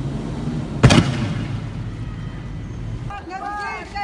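A single loud bang about a second in, ringing out briefly, over the low rumble of an armoured vehicle's engine. About three seconds in, the rumble gives way to raised voices calling out.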